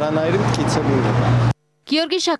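A man's speech over a steady low hum of street traffic. Both cut off abruptly about one and a half seconds in, and after a brief silence a different, cleaner voice begins.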